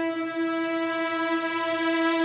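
French horn holding one long, loud, steady note.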